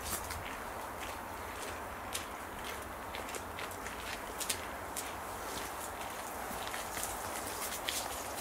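Steady outdoor background noise with a low, uneven rumble, dotted with many light, sharp clicks at irregular intervals.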